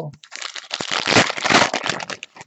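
Plastic trading-card packaging crinkling and crackling as it is handled: a dense run of small crackles that starts about a third of a second in, grows loudest in the middle and fades near the end.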